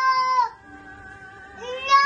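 A toddler boy singing in a very high voice: a long held note that breaks off about half a second in, then after a short pause another long note that slides up into place near the end.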